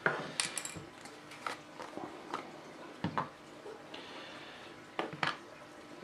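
A plastic food jar being opened and its lids handled on a wooden table: a scatter of light clicks and knocks as the screw lid and clear inner lid come off and are set down, with a short scrape about four seconds in.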